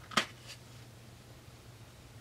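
Brief crackle of a plastic clamshell wax-tart package being handled, a short sharp burst just after the start and a fainter one soon after, then faint room tone.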